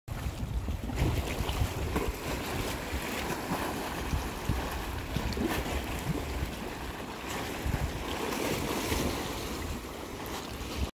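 Wind rumbling on a phone microphone over small sea waves lapping and splashing against rocks.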